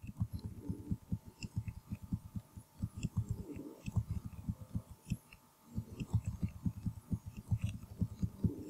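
Computer keyboard keys tapped in quick succession while lines of code are indented: dull low thumps, several a second, with faint clicks on top. There is a short pause just after five seconds in.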